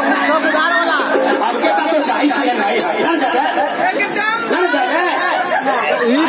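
Many voices talking and calling out over one another, loud crowd chatter with no single clear speaker. A held musical note carries on under the voices for about the first second and a half, then stops.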